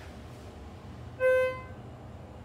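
Schindler 330A elevator's single electronic chime, one clear ding that fades away within about half a second, over the low steady hum of the cab.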